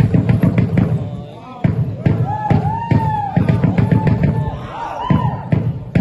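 Dance music with a loud, regular drum beat and a voice calling out long rising-and-falling notes over it in the middle, accompanying a traditional Naga folk dance. The beat drops out briefly about a second and a half in, then comes back.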